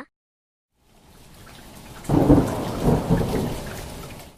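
Thunderstorm sound effect: rain fades in about a second in, then a rumble of thunder rolls over it from about two seconds in and slowly dies away.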